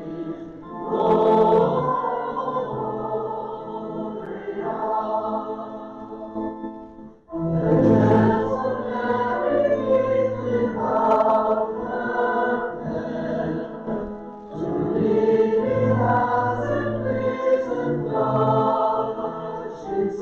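A group of voices singing a church song together in long phrases, with short breaks between phrases about seven and fourteen seconds in.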